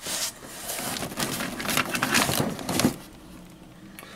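Power cords and plastic AC adapters rustling and knocking together in a cardboard box as a hand rummages through them, for about three seconds, then quieter.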